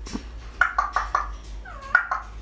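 Pet parrots calling: a quick run of about four short squeaky notes just over half a second in, then a longer call that bends in pitch near the end.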